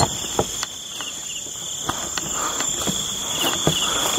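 A night chorus of crickets holding a steady high-pitched trill, with irregular soft footsteps and brushing through scrub and weeds.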